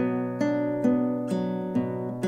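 Nylon-string classical guitar fingerpicking a slow arpeggio, single notes plucked about two a second and ringing on over one another. The pattern is thumb, index, middle, ring, middle, index, thumb, index across the fifth to second strings.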